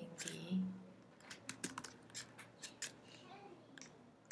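Computer keyboard being typed on: an irregular run of separate key clicks.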